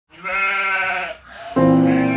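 A single sheep bleat, one wavering call just under a second long, followed about one and a half seconds in by piano chords starting.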